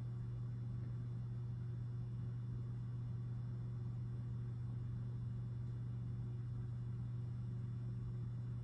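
Steady low electrical hum from a powered-on pinball machine.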